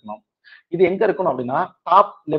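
Speech only: a man lecturing, with a short pause near the start.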